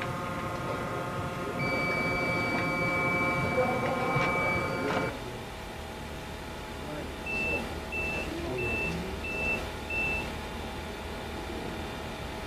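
Electronic drug-trace detector: a steady machine hum with a held high beep for about three and a half seconds, then the hum drops, and a couple of seconds later five short, evenly spaced beeps a little over half a second apart, alerting that a drug trace has been found.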